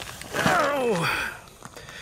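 A man's wordless vocal sound, one drawn-out utterance that falls steadily in pitch, about half a second in; then quiet.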